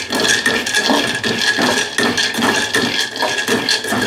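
A metal spoon stirring groundnuts in an aluminium pan on the stove, the nuts rattling and scraping against the metal in quick, irregular strokes.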